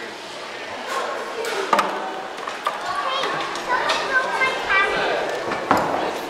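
Background voices and chatter of people in a large echoing hall, with a couple of sharp knocks, one a little under two seconds in and one near the end.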